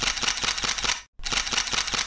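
Rapid, dense run of mechanical clicks, a shutter-like editing sound effect, in two bursts: it cuts off for a moment just after a second in and then starts again.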